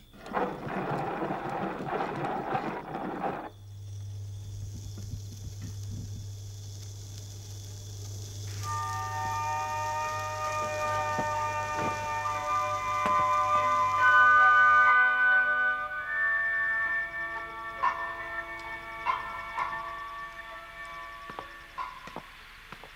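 A hand-cranked gramophone being wound, a rough rattling grind for about three and a half seconds. The record then starts with a low hum and surface hiss, and a few seconds later a slow melody of held notes plays from it.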